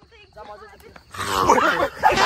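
People's voices: faint for the first second, then about a second in a loud, wordless shout or yell breaks out.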